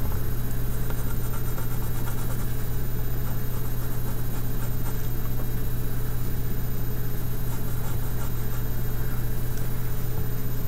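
A steady low hum runs throughout, with faint, intermittent scratching of a white colored pencil shading on toned paper.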